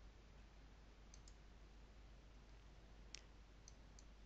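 Near silence: room tone with a few faint computer mouse clicks, a quick pair about a second in and two more near the end.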